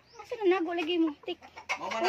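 Gamefowl chickens clucking and calling: one drawn-out call of about a second, then shorter calls near the end.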